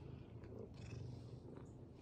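Domestic cat purring softly with a steady low rumble while being stroked, with faint brushing of a hand on its fur.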